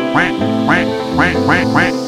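Duck quacking sound effect: five quick quacks in a row over background music.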